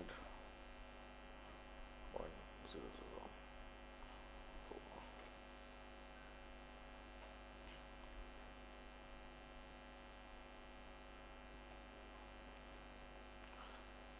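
Near silence: a steady electrical mains hum, many even tones held at one pitch, with only a few faint short sounds about two to three seconds in.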